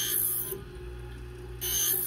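Scissor blade drawn against the spinning grinding wheel of a New Tech scissor sharpening machine: two short grinding strokes, one at the start and one near the end, over the steady low hum of the machine.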